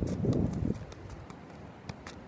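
Soccer ball being juggled: short sharp knocks as it bounces off the foot, roughly one every half second, with a louder low rumbling noise in the first moments.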